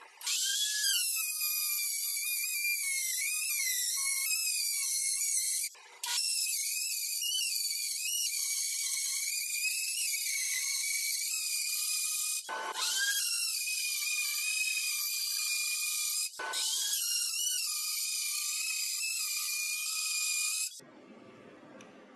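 Ridgid trim router running at full speed as it cuts a groove into plywood, a high whine whose pitch wavers slightly under load. The whine breaks off suddenly three times for a moment and stops about a second before the end.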